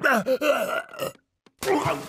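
Strained grunts and groans from a cartoon dog character wrestling his double, then a splash of water about a second and a half in as a head is forced into a toilet bowl.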